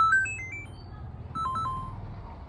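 A quick run of short electronic beeps at changing pitches, mostly stepping upward like a little ringtone-style jingle, followed by a few more beeps about a second and a half in. This is an editing sound effect at a clip transition, over a low hum.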